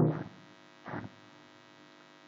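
Steady electrical mains hum in the recording, with the fading end of a spoken word at the start and a short faint sound about a second in.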